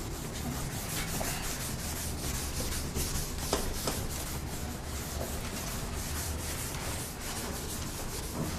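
A duster rubbing over a chalkboard as writing is wiped off, in quick repeated strokes.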